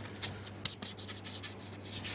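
Chalk writing on a chalkboard: a run of short scratching and tapping strokes as words are written.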